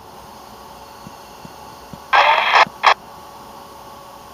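Railroad radio on a scanner: about two seconds in, a half-second burst of thin, clipped radio voice, followed by a short squelch burst.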